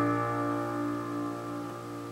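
Closing chord on a digital piano keyboard, held and slowly fading away at the end of the song.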